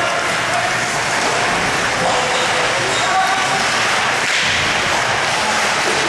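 Ice hockey rink sound during play: a steady wash of spectators' and players' voices and calls, with occasional knocks of sticks and puck.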